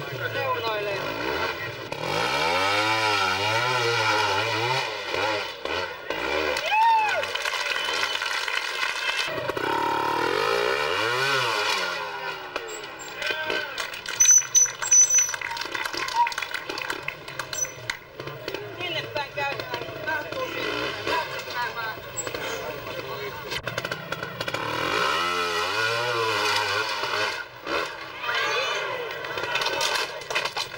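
Trials motorcycle two-stroke engines revving up and down over and over, with surges of revs a few seconds in, around ten seconds in and near the end. A few sharp knocks come about halfway through.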